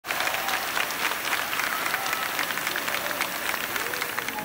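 Applause: many hands clapping steadily, with faint voices underneath.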